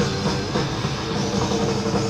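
Live hard-rock band playing an instrumental stretch with electric guitar, bass guitar and drum kit, one note held for over a second.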